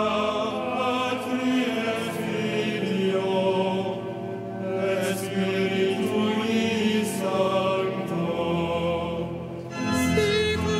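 Congregation and cantor singing liturgical chant in a cathedral nave. The sung phrases run on with brief lulls about four and nine seconds in.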